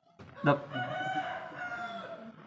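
A rooster crowing: one long, steady, high call lasting about a second and a half, starting just after half a second in.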